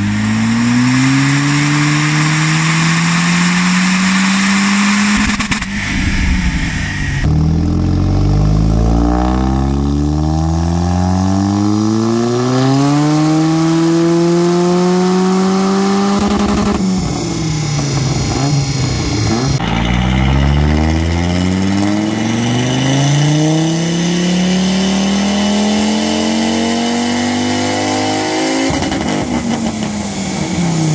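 Car engines revving under full throttle on a rolling-road dyno. Each pull is a long, steady rise in pitch, and several separate runs are cut together, with a drop in revs near the end.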